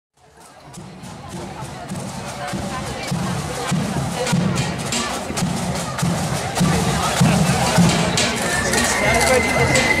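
Parade band drums beating a steady march, a bass-drum thud about every 0.6 s with sharp snare clicks, over crowd chatter; the sound fades in over the first couple of seconds.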